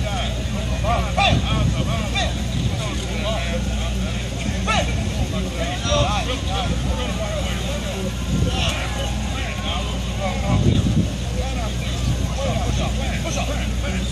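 Indistinct voices of coaches, players and onlookers calling and talking at a distance, over a steady low rumble.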